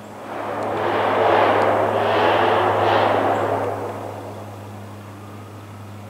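Lockheed Martin AC-130J Ghostrider flying overhead: a steady low propeller drone, with a rushing swell of noise that builds over the first second, holds, and fades away by about four and a half seconds in.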